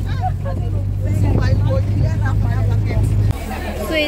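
Steady low rumble of a motor vehicle's engine and road noise, heard from inside the moving vehicle, with voices over it. It cuts off suddenly about three seconds in, giving way to market chatter.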